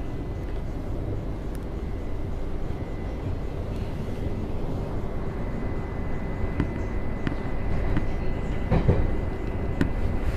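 Interior running noise of a Class 707 Desiro City electric multiple unit in motion: a steady low rumble of the wheels on the track, with a faint steady high whine coming in a few seconds in. A few sharp clicks and a thump follow late on.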